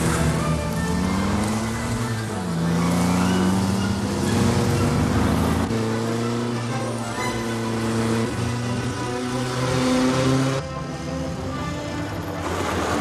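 Film score with held notes that change step by step, mixed over motorcycle engines and rushing noise. The engine and rush noise drops away about ten and a half seconds in.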